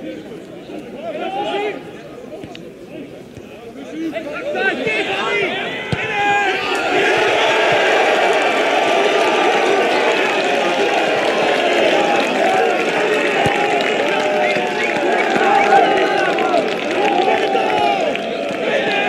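Football crowd: many spectators' voices talking and calling out over one another, quieter at first and swelling into a dense, loud babble about five seconds in.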